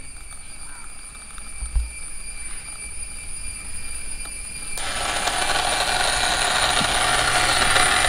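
A small electric motor on a DIY coffee-making robot starts suddenly about five seconds in and runs steadily, carrying the paper cup along the aluminium rail to the next dispenser. Before that it is quiet apart from a low hum and one dull thump.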